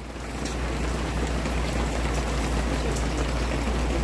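Steady rain falling, heard as an even hiss that swells over the first second and then holds.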